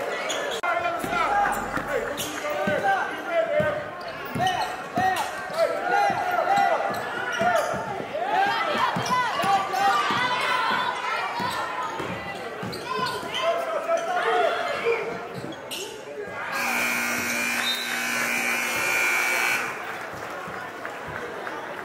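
Basketball game sounds in a gym: the ball dribbling on the hardwood, with players' and spectators' voices. Near the end the scoreboard horn sounds one steady blast of about three seconds.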